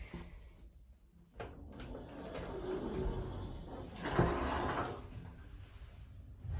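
Lift car's automatic sliding doors closing after a floor call: a click about a second and a half in, then a rising mechanical rumble with a louder bump around four seconds in, fading near the end.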